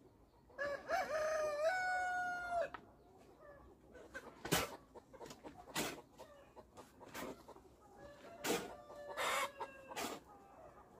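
A rooster crows once, a long call of about two seconds near the start. After it comes a series of five scraping strokes, about one every second and a half, as a hoe is dragged through wet cement and sand in a concrete pit, with hens clucking faintly.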